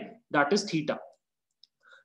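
A man speaking Hindi for about the first second, then a pause broken by a faint, short click near the end.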